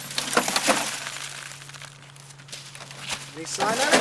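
A CRT monitor being tilted and set back down on a plastic tarp strewn with broken glass: a few sharp clicks and crunches of glass and plastic in the first second, then quieter rustling. A voice comes in near the end.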